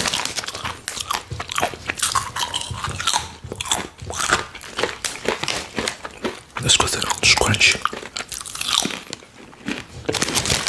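Close-miked biting and chewing of crisp plantain chips: a dense run of sharp crunches, with a few voice-like mouth sounds mixed in.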